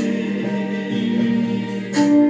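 Gospel song on an electronic keyboard: held chords with a man's sung vocal over them.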